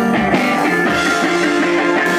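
A live rock band playing an instrumental passage, led by guitar over drums, with no singing.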